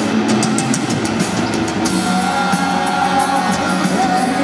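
Live amplified rock band playing an instrumental passage: electric guitar over a drum kit. There are crisp cymbal strikes in the first two seconds, then held notes ring out.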